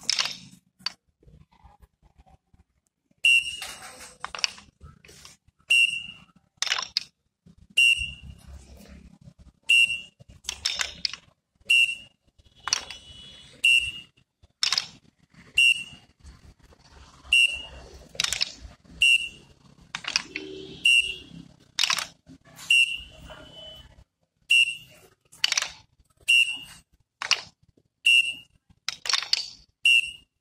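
Short high whistle blasts about every two seconds, each with a sharp clack of many hand dumbbells being knocked together in time by a group doing a drill; the pattern starts about three seconds in.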